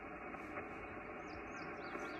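Steady hiss of a Yaesu FT-991 transceiver's receiver noise on an open frequency, cut off sharply above its voice passband, while the operator waits for a station to answer. Small birds chirp faintly over it, with a few short rising-and-falling chirps about half a second in and again near the end.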